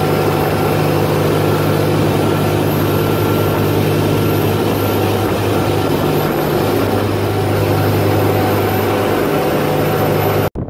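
Tour boat's engine running steadily under way, a continuous low drone over the rush of water churned up in its wake.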